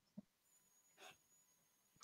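Near silence on a video-call audio line, with a faint brief sound about a second in.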